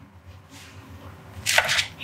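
Hands handling a cardboard Blu-ray disc case, low fumbling noise, then a brief loud scrape or rustle near the end as the case is picked up.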